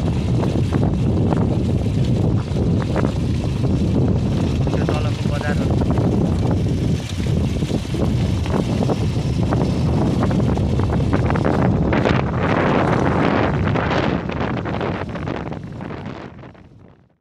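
Wind blowing across the microphone: a loud, steady low rumble with irregular buffeting.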